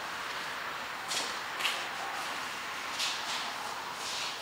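A rag wiping a raw plastic bumper cover down with rubbing alcohol before painting: a few faint swishes, about a second in, at a second and a half and near three seconds, over a steady quiet hiss.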